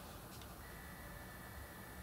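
Quiet room tone with a couple of faint light clicks at the start as a chipboard-and-paper model is handled on a cutting mat, then a faint steady high whine from about half a second in.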